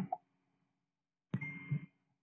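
Mostly near silence; about a second and a half in, a single sharp computer mouse click, followed by a short, faint low sound.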